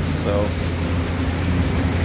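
A steady low machine hum from the grain-drying and auger equipment, unchanging throughout, with one short spoken word at the start.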